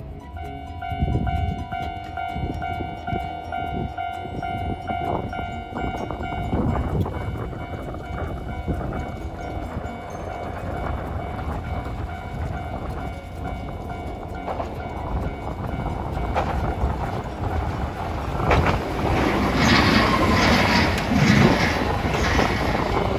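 Hiroden streetcar approaching and pulling in close past the platform, its wheels running on the rails and growing loud over the last few seconds, with a falling whine as it slows. For the first six seconds a steady ringing tone sounds and then stops.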